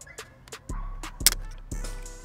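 Hip-hop instrumental background music with a deep sustained bass, and a sharp click about a second in.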